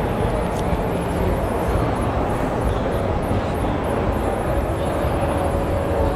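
Steady background din of a display hall, with faint background music.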